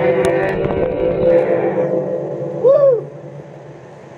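Intro of a recorded metal song playing back before the drums come in: sustained droning tones, a short rising-and-falling vocal-like moan a little before the third second ends, then a quieter lull.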